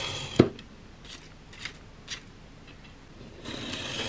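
Snap-off utility knife blade drawn along a steel ruler, slicing through a stack of paper: a soft scraping cut that ends just after the start, a sharp click, a few faint ticks, then another cutting stroke beginning near the end.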